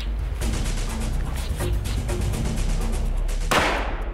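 Rapid M16 rifle shots fired at a slab of bullet-resistant glass, a quick series of sharp reports over background music, with one louder crashing burst about three and a half seconds in.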